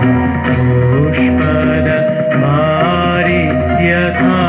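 Male vocalist singing a devotional aarti hymn in a sustained, melismatic line, accompanied by a Yamaha electronic keyboard holding chords.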